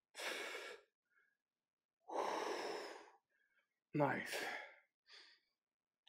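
A man breathing hard with effort mid-set of dumbbell lifts: two long, noisy exhales about two seconds apart, then a short spoken "nice" and a brief faint breath.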